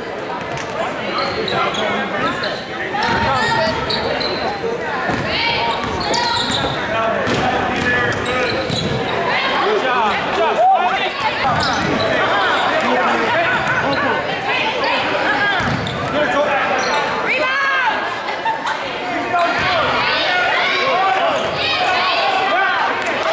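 A basketball being dribbled on a hardwood gym floor under steady, indistinct spectator voices and shouts, echoing in a large gymnasium during a game.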